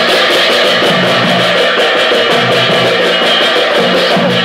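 Instrumental pala music: several pairs of large brass hand cymbals clashing in a fast, steady rhythm, with a two-headed drum beating underneath.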